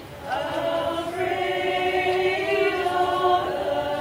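Women's choir singing in harmony on long held notes, coming back in after a brief breath at the start.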